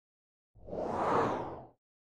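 A single whoosh sound effect for an animated logo transition, swelling up and fading away over about a second.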